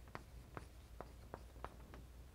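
Chalk writing on a blackboard: faint taps and strokes, about six in two seconds.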